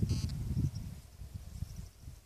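Uneven, gusty rumble of wind on the microphone, fading through the second half. A short, high, bleat-like animal call sounds just after the start.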